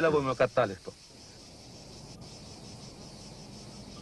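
Faint, steady chirring of insects in the outdoor background, heard once a man's voice trails off about a second in.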